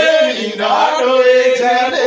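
Men singing a chant-like song, with long held notes.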